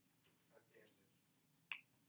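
Near silence: quiet room tone, with a faint voice briefly about halfway through and one sharp click near the end.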